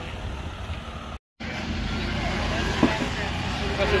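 Lifted 4x4's engine idling with a low steady rumble while people talk around it. The sound drops out for a moment about a second in and comes back louder, and there are two sharp clicks near the end.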